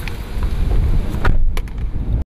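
A person climbing out of a car's driver seat, with a few clicks and knocks, then the car door shut about two-thirds of the way through. After the door closes, the sound turns duller, heard from inside the closed car, over a steady low rumble.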